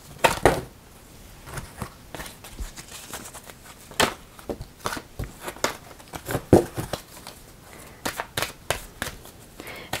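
A deck of oracle cards being shuffled by hand: irregular slaps and clicks of the cards against each other, a few sharper ones standing out.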